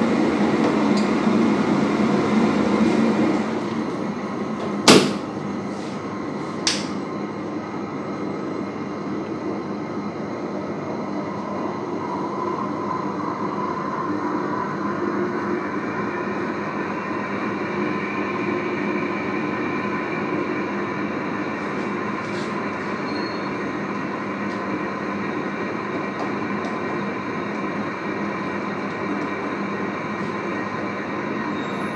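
Digital shaking incubator running with a steady mechanical rumble, louder for the first three seconds while its door is open. About five seconds in the door is shut with a sharp bang, followed by a smaller click; from about twelve seconds a higher whine comes in as the shaking speed is turned up toward 150 rpm.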